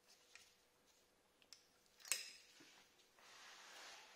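Quiet handling sounds: a few light clicks, one sharp click about two seconds in, then a soft rustle of about a second near the end, as gloved hands work an allen key and bolt in a rivet nut on a motorcycle exhaust silencer.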